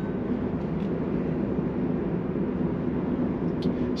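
Steady road and tyre noise heard inside the cabin of a Tesla electric car driving along a street.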